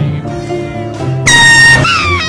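Air horn blasted once about a second in: a loud, steady, high blare of about half a second, over background music.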